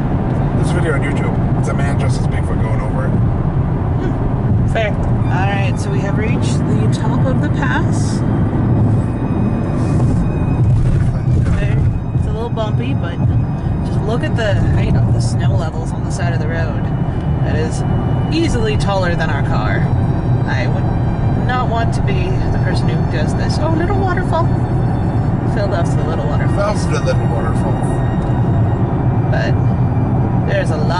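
Song with vocals playing on a car stereo, over the steady low road and engine rumble inside a moving car's cabin.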